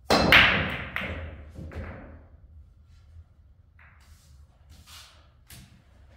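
Pool break shot in 9-ball: a sharp crack as the cue ball smashes into the rack, then the balls clacking apart and knocking off the cushions for about two seconds, with a few fainter clicks afterwards.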